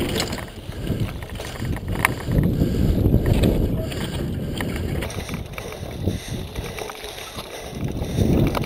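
Mountain bike rolling over sandstone slickrock, heard from a camera on a riding bike: a low, gusting rumble of wind on the microphone and tyre noise that swells and fades, with a few sharp clicks and rattles from the bike.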